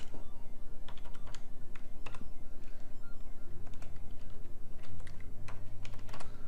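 Keystrokes on a computer keyboard, scattered clicks as an e-mail address is typed into a form, with music playing underneath.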